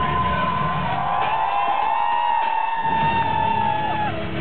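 Loud live music over a concert sound system, heard from within the crowd, with the audience cheering. About a second and a half in, the bass drops out for roughly a second while a long high held note carries on. The held note slides down slightly near the end.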